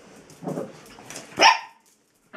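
Small dog barking twice: a short, lower bark about half a second in, then a louder, sharper one about a second later.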